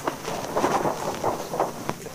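Cardboard toy boxes being pulled from a stack and handled: a run of irregular short scrapes and rustles.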